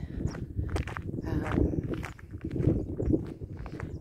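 Footsteps on a gravel dirt path, with wind rumbling on the microphone; a brief spoken "um" about a second in.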